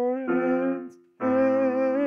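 A man's voice singing held melody notes with a slight waver over piano chords; the voice and chord drop off just before a second in, and a new phrase begins with a fresh chord just after.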